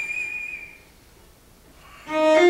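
Cello holding a single high, pure note that fades out less than a second in, followed by a brief quiet pause between phrases.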